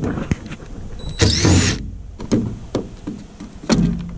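Cordless driver backing out the screws of a reflector on a school bus's steel side: a loud half-second run of the motor about a second in with a rising whine, among light clicks and clatter, and a thump near the end.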